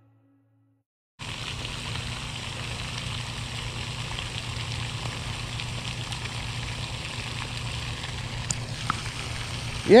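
Near silence for about a second, then the steady splashing hiss of a pond's spray fountain, with a low hum underneath.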